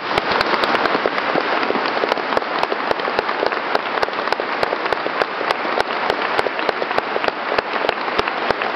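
Audience applauding: many hands clapping in a dense, steady patter that starts just as the music ends and carries on at an even level.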